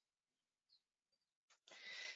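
Near silence, with a brief faint hiss near the end.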